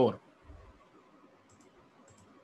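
A soft low bump about half a second in, then a few faint, quick computer mouse clicks near the end, over quiet room tone.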